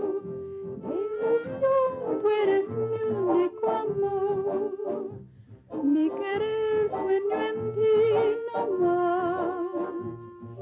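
A woman singing a slow melody, with wide vibrato on long held notes and a short break for breath about five and a half seconds in.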